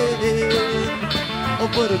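A live country-rock band of electric guitars, bass, pedal steel and drums playing an instrumental break over a steady beat, with a lead line of sliding, bending notes. A singer comes back in at the very end.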